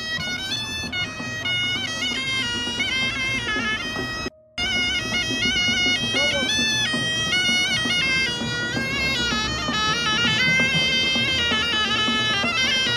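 Snake charmer's pipe playing a winding melody that moves up and down in steps over a steady low tone, the sound cutting out for a moment about four seconds in.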